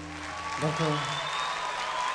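Audience applause at the end of a song, with a short vocal shout about half a second in.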